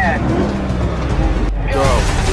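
Movie-trailer sound mix: music over a steady low bass with car engine noise and brief voice-like sounds. The high end drops out suddenly about one and a half seconds in, at a cut, then the mix comes back.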